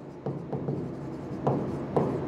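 A pen writing on a board: a few short scratching and tapping strokes as letters are formed.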